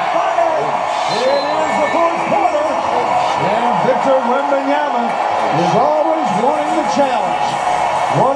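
Speech only: a man's voice talking throughout, with no other distinct sound.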